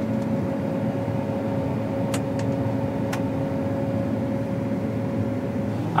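Combine harvester running, heard from inside the cab: an even machine drone with a steady hum, and a few faint ticks about two to three seconds in.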